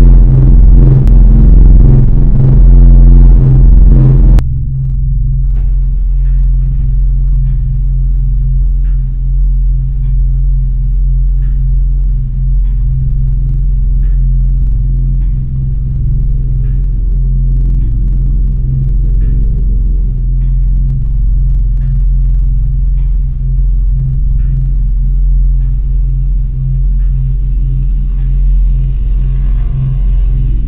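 A deep, steady rumbling drone with faint ticks about once a second. A louder, fuller passage cuts off suddenly about four seconds in and gives way to the drone.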